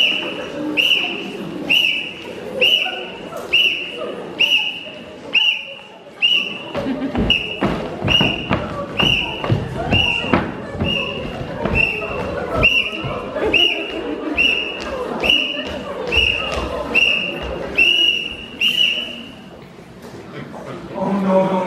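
A marching whistle blown in short blasts at a steady cadence, about one a second, as a uniformed band marches in. From about seven seconds in, the marchers' feet thump on the stage floor and ramp under the whistle.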